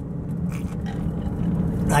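Steady low hum of a car's engine and tyres on the road while driving, heard from inside the cabin.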